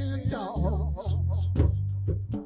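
Live blues-funk trio playing, with long, deep bass notes changing about twice a second under electric guitar and drums. A quivering, wavering melody line sounds during the first second.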